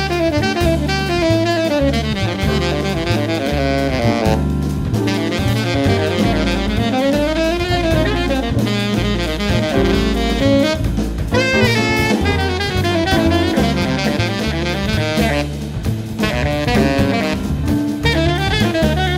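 Live jazz: a tenor saxophone plays a fast, running solo line over upright bass and a drum kit. The saxophone breaks off briefly twice, about four seconds in and again near fifteen seconds.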